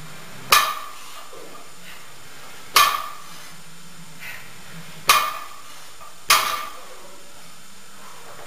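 Loaded barbell's iron plates clanking down onto a wooden deadlift platform during repeated deadlift reps: four sharp metallic clanks with a brief ring, the last two closer together.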